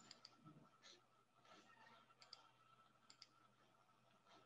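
Faint computer mouse clicks, mostly in quick pairs, three times, over a faint steady hum.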